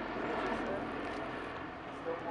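Twin turboprop engines and propellers of a CC-115 Buffalo droning as it climbs away, slowly fading.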